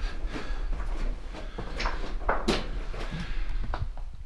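Footsteps and gear on a rocky mine floor: scattered scrapes and knocks, a few sharp ones, over a steady low rumble.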